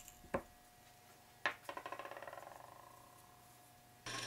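Small metal hand tool knocking on a wooden bench: a sharp tap, then about a second later another tap followed by a faint ringing rattle that quickens and dies away over about two seconds, as of a metal tool rocking to rest.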